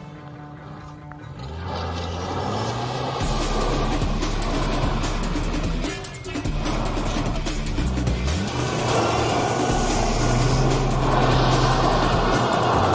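Music playing over a VW Golf Mk3 estate's engine as it revs and slides on loose gravel. The gravel and tyre noise grows louder in the second half.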